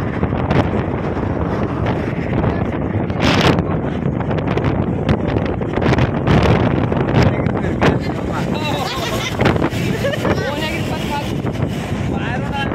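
Steady wind buffeting the phone microphone with the rumble of a moving truck and its tyres on the road, heard from the open cargo bed. Voices talk over it, more clearly later on.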